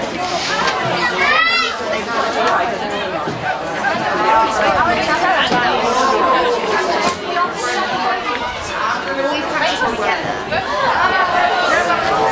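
Spectators' voices chattering and calling out close by, several people talking over one another with no clear words.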